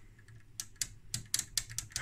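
Rapid, irregular clicking of a Trio CS-1352 oscilloscope's front-panel volts/div rotary switch as the knob is twisted back and forth through its detents, a dozen or so clicks starting about half a second in. The controls are being worked to clean up their aging contacts.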